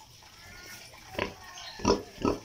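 Sow grunting: two short grunts, one a little after a second in and a louder one near the end.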